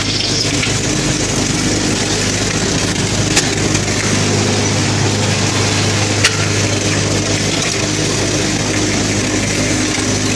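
A concrete tile-making machine's vibrating table running with a loud, steady, low electric hum. Two short sharp knocks come through, a little after three seconds in and again about six seconds in.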